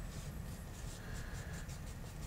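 A filbert bristle brush working oil paint onto a canvas in a quick series of faint, short strokes.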